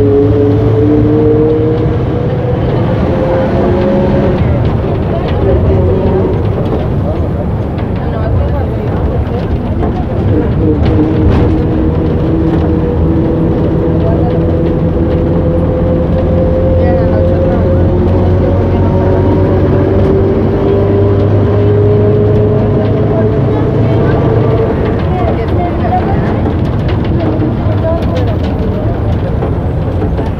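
City bus engine and drivetrain heard from inside the crowded passenger cabin: a loud, steady low rumble with a whine that climbs in pitch as the bus gathers speed. The whine drops back about four seconds in, then climbs slowly again for about fifteen seconds.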